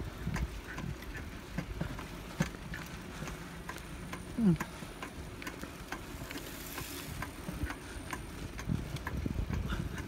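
Adult three-wheeled bicycle rolling along a concrete path: a low rumble of tyres and wind on the microphone, with a light, regular ticking about three times a second. A short falling voice sound about halfway through is the loudest moment.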